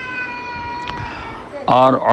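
A long, drawn-out pitched cry in the background, sliding slowly down in pitch and dying away about one and a half seconds in.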